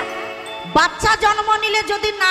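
Devotional kirtan music: a woman sings a held, wavering melodic line over accompaniment, with a few sharp percussion strikes. The main phrase starts a little under a second in.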